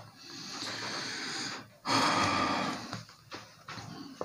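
A man breathing audibly: a long, soft breath, then a louder breath about two seconds in that lasts about a second.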